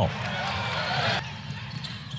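Arena crowd noise at a basketball game, with a basketball bouncing on the hardwood court. The crowd noise drops a step a little over a second in.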